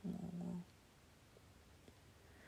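A woman's voice making a short, held, hum-like sound at one steady pitch for about half a second, then near silence.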